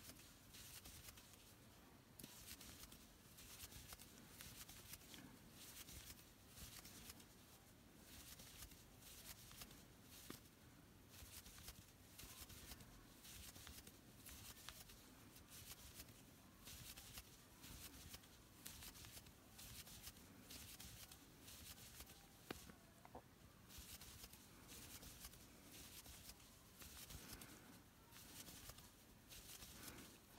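Faint, rhythmic rustle of acrylic yarn being drawn through stitches with a crochet hook, a soft stroke every second or so as single crochet stitches are worked around.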